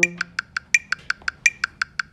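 A French horn's last held note dies away in the first moments, leaving a metronome ticking steadily at about six clicks a second. Every fourth click is accented with a higher tone, marking the beat with subdivisions.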